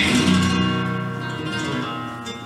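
Flamenco guitar strummed once, with the chord ringing and slowly dying away.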